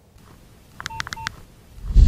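Electronic transition sound effect: a quick run of short, dialing-tone-like beeps about a second in, then a low whoosh swelling up near the end as the logo sting starts.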